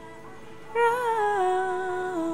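A woman's voice holding a long, falling hum of amazement, starting about three-quarters of a second in and stepping down in pitch.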